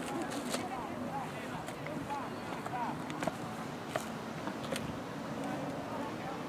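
Faint background ambience of distant voices, with a few short sharp clicks scattered through it.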